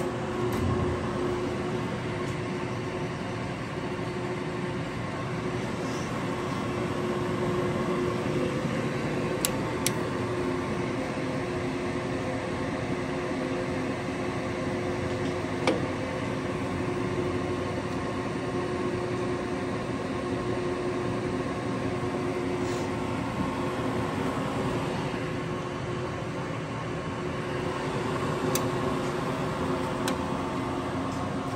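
LeBlond Regal servo-shift engine lathe running under power, its spindle turning: a steady, smooth hum of the headstock gearing with a few steady tones in it. A few short sharp clicks sound scattered through.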